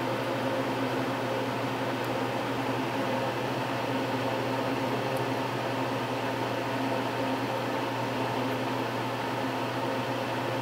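A small electric fan or motor running with a steady, buzzy hum that does not change.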